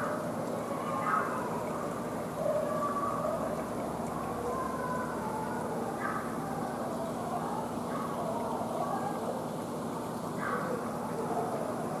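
Room ambience: a steady low hum with faint, indistinct voices of people talking at a distance.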